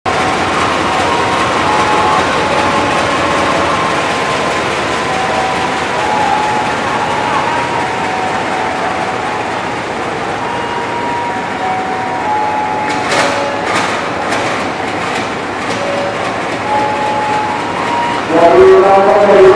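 GE U18C (CC 201) diesel-electric locomotive standing and running steadily at a station platform, with its engine and cooling noise filling the air. A few sharp bursts of noise come about thirteen to fifteen seconds in.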